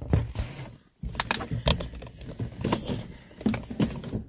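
Handling noise of a phone being moved about inside a truck cab: rustling with scattered light clicks and knocks, broken by a brief dropout to silence about a second in.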